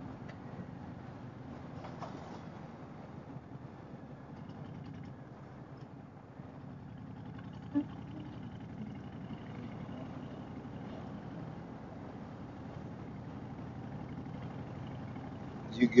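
Harley-Davidson Fat Boy's V-twin engine running steadily at road speed, heard low and muffled with road and wind noise, and one short knock about halfway through.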